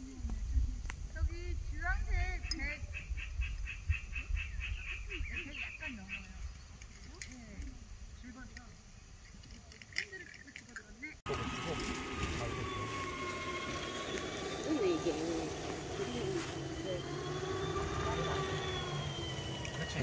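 Rapid pulsed animal calls, about six a second, repeat for several seconds over wind noise on the microphone, probably a frog chorus. After a cut, a wailing tone rises and falls slowly, like a distant siren.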